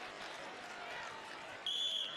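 Low arena crowd murmur, then near the end a referee's whistle blows one short, steady, shrill note, restarting the wrestling bout from standing.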